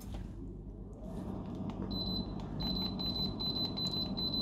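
Floor-standing air conditioner switching on by remote: its fan noise grows slowly, with light clicks of the remote's buttons. A high, steady electronic beep tone starts about two seconds in, breaks briefly once, then carries on.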